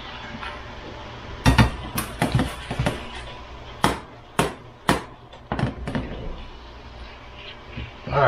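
A skillet of chicken and mushrooms handled on an electric stovetop: about ten sharp metal knocks and clanks of the pan against the burner, over a steady sizzle as the juice cooks off.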